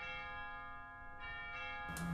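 Bells ringing: a new stroke about a second in, and each struck note rings on with many steady overtones.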